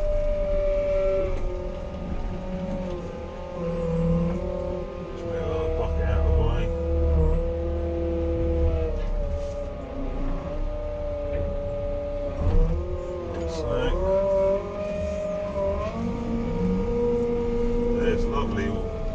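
Merlo 42.7 telehandler heard from inside the cab, its engine and hydrostatic drive running with a steady whine over a low rumble, the pitch dipping and rising again several times as the machine slows and picks up speed. A single sharp knock about two-thirds of the way through.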